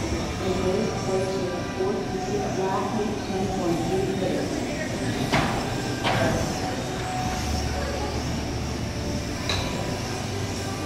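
Small electric motors of 1/12-scale on-road RC cars whining steadily as they race around an indoor carpet track, with three sharp clicks, about five and a half, six and nine and a half seconds in.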